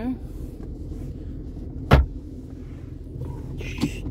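A single sharp thump about two seconds in, a Ford Ranger's glove box lid being shut, over the steady low rumble of the truck idling.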